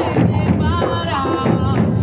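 Afro-Brazilian street percussion ensemble playing a steady drum groove, with a voice singing over it.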